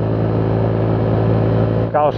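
Four-stroke scooter engine running at a steady cruising speed, an even hum that holds one pitch, heard from the rider's seat.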